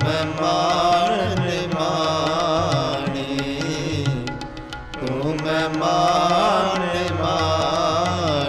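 Sikh kirtan music: a melody on harmonium with tabla, the same phrase starting again about five seconds in.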